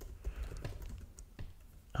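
Faint, scattered keystrokes on a computer keyboard, typing in a web search.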